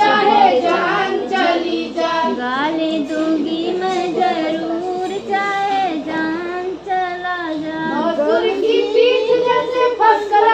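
Women singing a traditional Hindi-belt village wedding folk song together in high voices, with no instrumental backing. The melody runs on without a break, the sung lines gliding and held.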